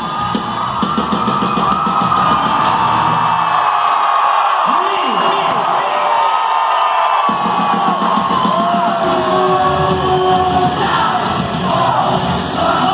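Live rock band playing loud in a theatre, with gliding electric-guitar lead lines over bass and drums. Midway the bass and drums drop out for about three seconds while the guitar carries on, then the full band comes back in.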